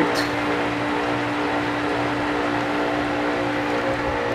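Steady background hum with a constant pitch over an even hiss, a level of background noise that is "a little high".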